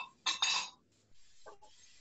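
A wooden spatula scraping and stirring chicken pieces in a frying pan: two short scrapes in the first second.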